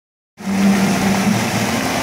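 Fountain water jets splashing, a steady hiss of falling water over a low, steady hum, starting about a third of a second in.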